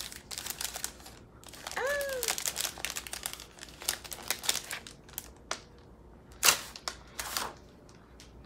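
Planner paper sheets and a thin vellum dashboard rustling and crinkling as they are handled and laid onto a stack, with two louder paper swishes near the end.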